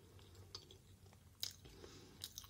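Faint mouth sounds of someone chewing soft rice porridge with closed lips, with two small clicks, one about half a second in and a sharper one about a second and a half in.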